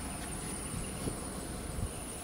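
Steady high-pitched insect drone, like crickets or cicadas, over a low background hum.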